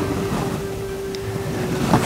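Steady hiss with a faint steady tone held underneath.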